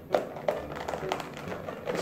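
Clear plastic takeout container being handled and its lid pressed shut, giving several short plastic clicks and crinkles spread over a couple of seconds.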